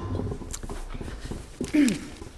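A person's short vocal sound falling in pitch near the end, like a brief hum or throat-clear picked up by a desk microphone, over faint knocks and low hum.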